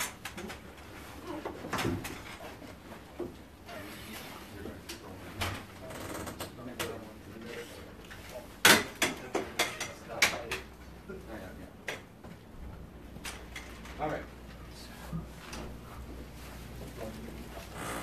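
Scattered knocks, clicks and clatter of film lighting and camera gear being handled and moved in a small room, the loudest a sharp knock about nine seconds in followed by a quick run of clicks. Indistinct voices murmur underneath.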